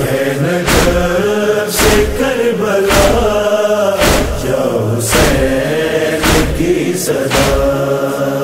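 Male voices chanting a noha (Urdu Shia lament) in chorus, long held notes over a steady thump about once a second marking the beat.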